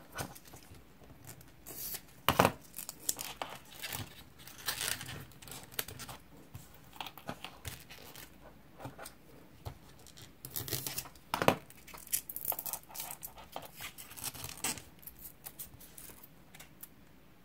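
Hands pressing and adjusting small susukkang (craft pith stick) pieces stuck on paper: scattered rustling and crackling with clicks, and two louder sharp crackles, one a couple of seconds in and one about eleven seconds in.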